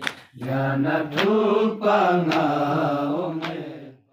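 A man chanting a Balti noha, a Shia lament, in a slow wavering melody, with a short sharp beat about once a second. The voice fades out at the end.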